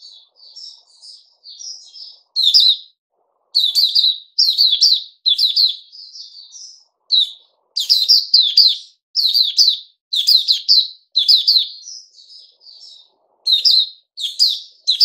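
Caged Puteh Raja white-eye singing: quick runs of high, chirped notes in short bursts, louder phrases alternating with softer twittering.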